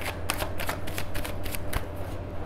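A tarot deck being shuffled by hand: a quick, fairly even run of soft card clicks.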